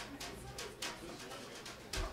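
Quiet start of a blues band track: light percussion strokes at a steady quick pace, about three a second, over faint low tones.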